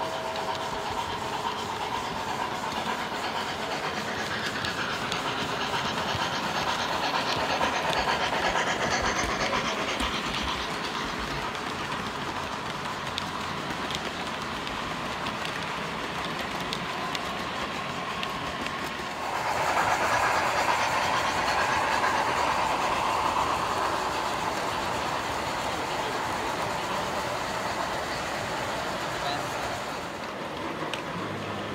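O gauge model train rolling along the layout's track, its wheels clacking and rumbling steadily, louder about two-thirds of the way through, over the chatter of a crowd.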